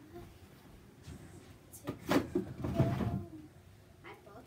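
A few knocks and thumps of household objects being handled and set down: one sharp knock about two seconds in, then a louder cluster of thumps just before the three-second mark.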